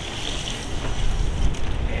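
Wind buffeting the microphone: an uneven low rumble with no clear tone in it.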